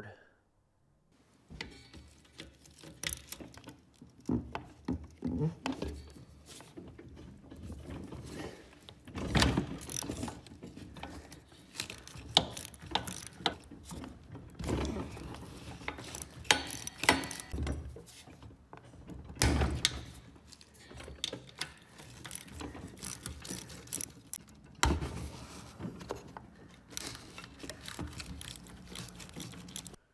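Small socket ratchet clicking in short irregular runs as the engine-mount bolts under a mini bike frame are loosened, with occasional knocks of the tool against the metal.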